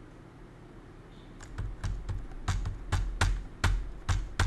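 Computer keyboard typing: a quick run of about ten keystrokes that begins about a second and a half in, after a quiet start.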